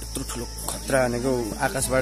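A man speaking close to the microphone over a steady, high-pitched drone of insects.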